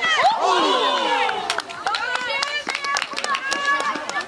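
Female players shouting calls across a football pitch, several high, raised voices overlapping. From about a second and a half in, a quick run of sharp claps or knocks joins the shouting.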